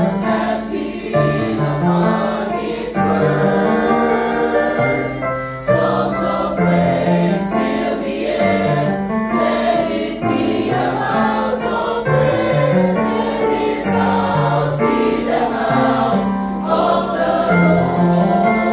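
A small mixed SATB church choir singing a hymn in parts over a recorded accompaniment track, with a bass line moving under the voices.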